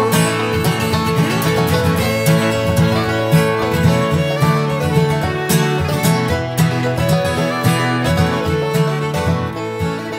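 Instrumental country-folk string band playing, with fiddle over strummed acoustic guitar and a steady beat. It gets slowly quieter toward the end.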